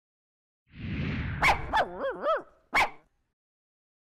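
A rushing whoosh, then a dog barking twice, giving two quick warbling whines that rise and fall, and one last bark.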